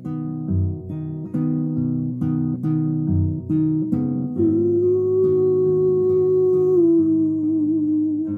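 Nylon-string classical guitar fingerpicked in a three-four waltz pattern. About four seconds in, a man's voice joins with a long sung 'ooh' held for about three seconds.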